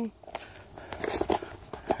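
Footsteps on loose limestone rubble: a few irregular crunches and knocks of stones shifting underfoot.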